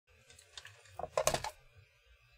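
Typing on a computer keyboard: a few scattered key clicks, then a quick run of louder keystrokes about a second in.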